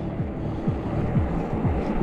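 Steady low rumble of an electric mountain bike riding up an asphalt road: wind on the handlebar camera's microphone and tyres rolling on the road surface, with a few faint low whooshes.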